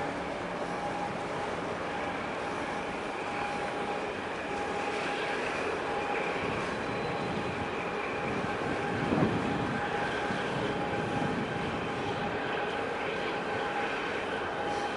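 Steady mechanical drone with a faint held tone running through it, and one brief louder thump about nine seconds in.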